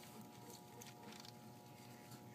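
Near silence: room tone with a faint steady hum and a few soft ticks.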